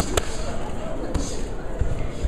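Punches from boxing gloves landing with sharp smacks, two in quick succession at the start and another just past a second, over crowd voices.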